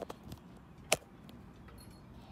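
A few faint ticks and one sharp click about a second in, like a small hard object being knocked or handled.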